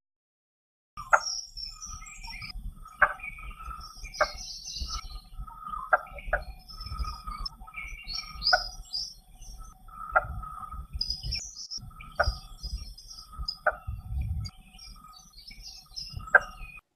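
Blue-bearded bee-eater giving its territorial call: a series of short, harsh knocking notes about a second apart, akin to someone chopping trees, with smaller birds chirping and insects in the background. The call begins about a second in.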